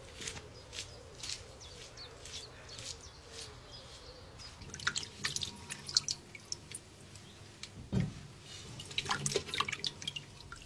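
Hands moving tomatoes about in a bowl of water, with small splashes and drips and a single knock about eight seconds in.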